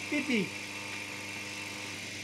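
Two coupled washing-machine electric motors running with a steady, smooth low hum; a short falling tone about a quarter of a second in.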